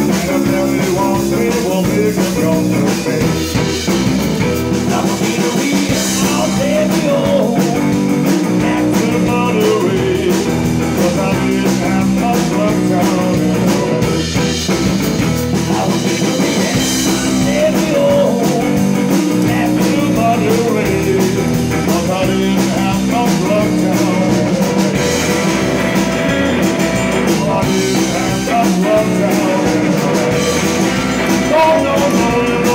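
Rock-and-roll trio playing live: hollow-body electric guitar, upright double bass and drum kit, at a steady full level.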